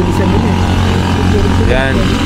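Motorcycle engines of motor tricycles running as they come up the road, a steady low hum with voices over it.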